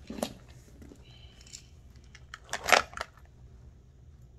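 Handling noise from a leather satchel being lifted and held open: a brief rustle just after the start, a louder scraping rustle about two and a half seconds in, and a few light clicks from its metal hardware.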